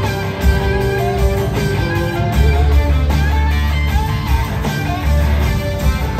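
Live rock band playing at full volume: an electric guitar lead line with gliding, bent notes over bass, strummed acoustic guitar and drums.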